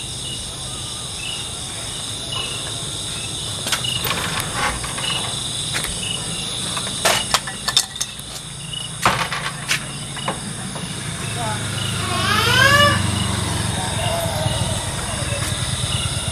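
Crickets trilling steadily at night under a low hum. Several sharp clicks and knocks come in the middle, and a short call rises in pitch a few times near the end.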